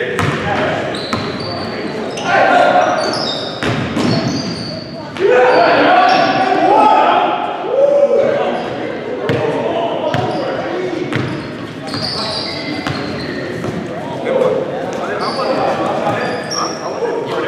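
Basketball game on a hardwood gym court: the ball bouncing, short high sneaker squeaks and players shouting, all echoing in a large hall. The voices are loudest a few seconds into the play.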